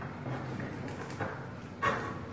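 A blade scraping and levering at the rim of a tin can, with a few small metal knocks and one sharp metallic click near the end.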